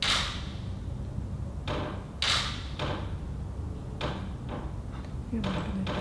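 A handful of sharp, irregularly spaced taps and clicks, the loudest right at the start and about two seconds in, over a steady low electrical hum.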